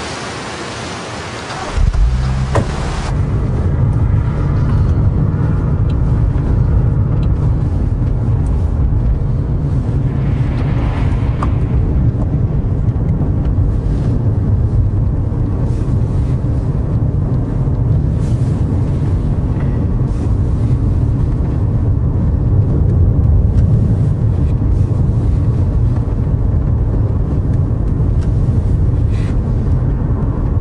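Car driving, heard from inside the cabin: a steady low rumble of engine and road noise. It starts abruptly about two seconds in, replacing a broad hiss.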